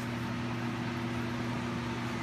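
Biosafety cabinet blower running: a steady hum with a rush of air and a few low, unchanging tones.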